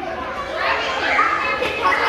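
A crowd of young children talking and calling out all at once, an overlapping chatter of many voices that grows louder about half a second in.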